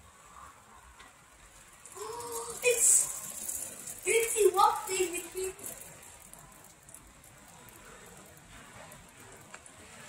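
A person's voice making a few short wordless sounds with gliding pitch, starting about two seconds in and lasting about three and a half seconds.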